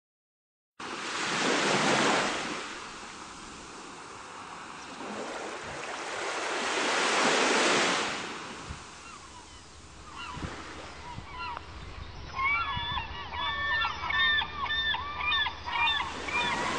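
Sea waves surging in twice, then from about two-thirds of the way through, gulls calling over and over above the surf.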